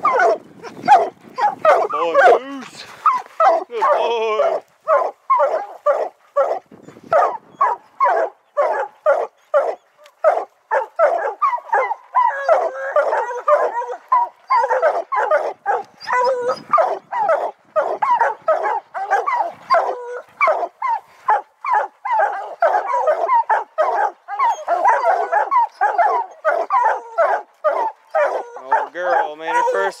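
A pack of hounds barking treed at the foot of a pine: many fast, overlapping barks and bawls from several dogs at once, without letup.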